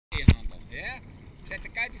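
Seawater sloshing around a person floating in the sea, with a sharp knock a fraction of a second in, the loudest sound.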